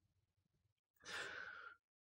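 A short breath from the narrator, lasting under a second, about a second in; otherwise near silence.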